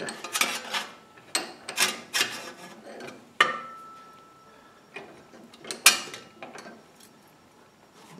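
A sheet-metal panel clattering and scraping as it is repositioned in a steel bench vise, with the vise handle being worked. A sharp metallic knock about three and a half seconds in leaves a short ringing tone, and another knock comes near six seconds.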